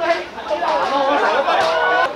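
Several voices shouting and calling over one another, loudest through the second half, as spectators and players call out during open play on a football pitch.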